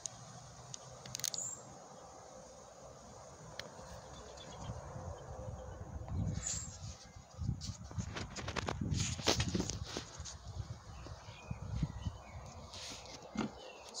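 Handling noise from a handheld camera and movement on wooden decking: irregular low rumbles and light knocks, busiest in the second half, with a few sharp clicks.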